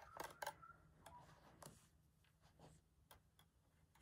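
Faint, scattered clicks and ticks from a length of wire being handled and bent against a fabric piece, a couple of them close together in the first half second, with near silence between.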